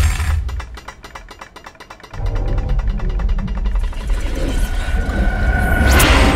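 Horror-trailer sound design: a fast, even rattle of clicks, thin at first, joined about two seconds in by a deep rumble that builds, with a held high tone coming in near the end.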